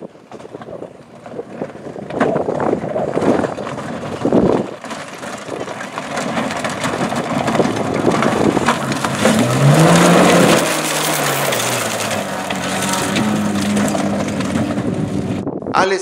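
Volkswagen Amarok V6 rally pickup at speed on a loose gravel stage: tyres crunching and spraying stones. Around the middle the engine revs sharply up and falls back, then holds a steady note near the end.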